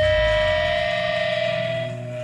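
A live metal band's distorted electric guitars hold a ringing final note at the end of a song. The bass and drums drop out within the first second, leaving the sustained guitar tone slowly fading.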